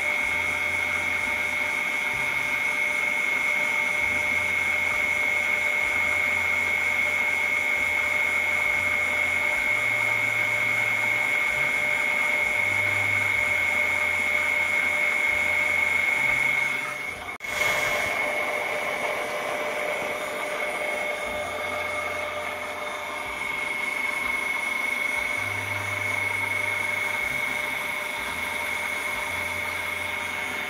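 Small DC motor of a homemade mini aquarium pump running with a steady high-pitched whine, over water splashing from the outlet tube into a glass tank. The sound breaks off for a moment a little past halfway, then carries on.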